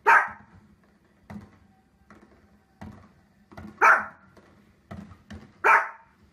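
A dog barking: three loud, sharp barks, one at the start, one about four seconds in and one near the end, with fainter short sounds between them.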